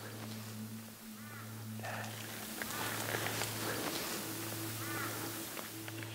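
A wild bird calling several times, each call short and arching, over a low steady hum.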